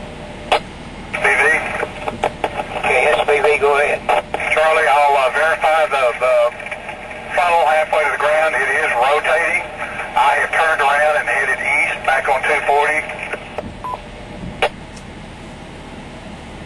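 Speech coming through an amateur two-way radio's speaker: a narrow, tinny voice transmission that starts about a second in and stops shortly before the end, with a click just before it starts.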